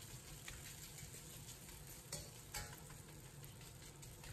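Faint sizzling of egg-and-flour-coated potato shreds frying in a little oil in a wok, with two soft knocks of the ladle a little after halfway as the shreds are pressed flat.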